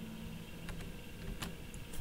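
A few short, faint clicks of a computer mouse and keyboard over a steady low hum.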